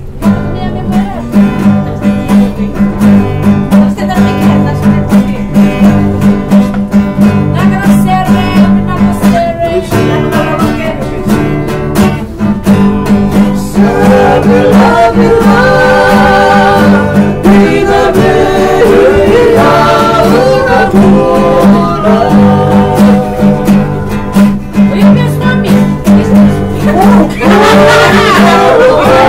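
Two acoustic guitars strummed while men sing together in Fijian; the singing grows strong about halfway through.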